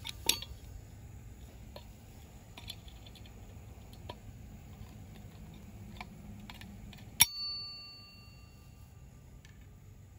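Snap-ring pliers working a small steel snap ring on a centrifugal clutch shaft: light metallic clicks and ticks, then about seven seconds in a single sharp metallic snap as the ring springs free, with a brief ringing tone that fades out.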